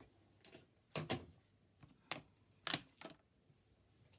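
Several light clicks and taps, about six over the four seconds, with the sharpest near one second and near the three-second mark: small craft items being handled off camera on the desk.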